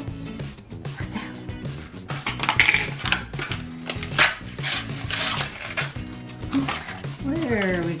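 Background music with rustling and a few sharp clicks as the paper wrapper of a tube of refrigerated dough is peeled open by hand.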